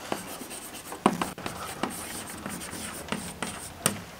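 Chalk writing on a chalkboard: a series of short, light scratching strokes with an occasional sharp tap as a word is written out.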